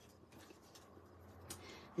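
Faint handling of cardstock and satin ribbon, with a single light tick about one and a half seconds in.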